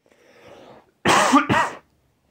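A person coughing: a faint breathy intake, then two harsh coughs in quick succession about a second in.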